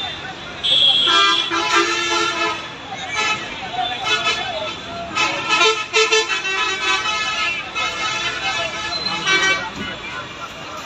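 Street sound: people talking loudly while vehicle horns toot and traffic runs; no clear sound from the burning cables stands out.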